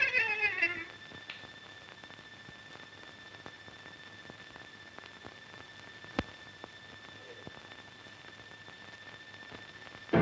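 Violin background music slides down in pitch and dies away within the first second. Then only the hiss of an old film soundtrack, with a faint steady high whine and scattered clicks, one sharper about six seconds in.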